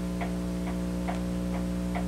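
A clock ticking steadily, about two ticks a second, over a constant electrical hum.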